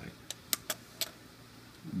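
Four light, sharp clicks within about the first second, of small hard parts being handled.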